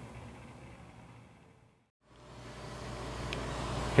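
Faint steady outdoor background noise with a low hum. It fades out to silence about halfway through and fades back in.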